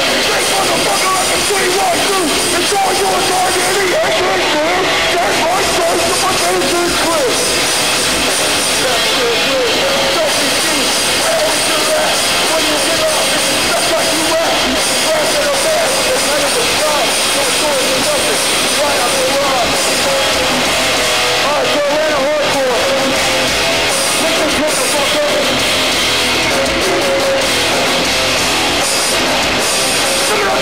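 Hardcore band playing live: shouted vocals over distorted electric guitar, bass and drums, loud and unbroken.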